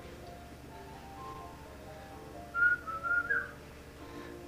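Soft background music, and about two and a half seconds in a short whistled phrase of a few high notes, louder than the music, lasting about a second.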